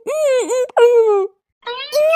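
A high-pitched cartoon character's voice in drawn-out, wavering vowels, three stretches with a short pause a little past the middle.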